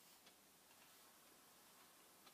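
Near silence: faint room tone, with one small click about a quarter second in.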